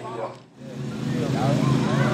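Several men's voices talking and calling out over one another, with a steady low engine hum underneath; the sound dips briefly about half a second in.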